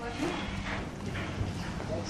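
A few hard steps clopping on a stone pavement over a murmur of background voices.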